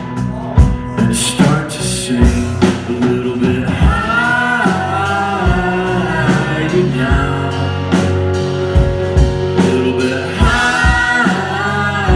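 Live rock band playing: electric guitars, bass, keyboard and a steady drum beat, with held sung notes rising over the mix about four seconds in and again near the end.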